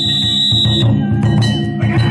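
Danjiri festival music: a taiko drum and hand-struck gongs playing a fast, steady rhythm. A high, held tone sounds over it until about a second in.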